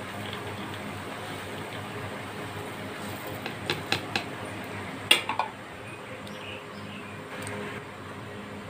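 Sesame seeds and peanuts poured from a plate into a steel mixer-grinder jar: a steady hiss of falling seeds, with a few sharp clicks from about three and a half to five seconds in, the loudest near five seconds.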